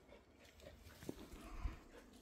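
Faint footsteps on a dirt path scattered with dry leaves: a few soft steps, the clearest about a second in and near the end.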